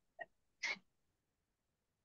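A person's short breathy burst, like a quick sneeze or sharp exhale, heard through a video-call microphone with a faint tick just before it. The audio then drops to silence.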